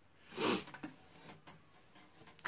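A short breathy exhale about half a second in, followed by a few faint clicks as fingers handle the guitar strings at the headstock.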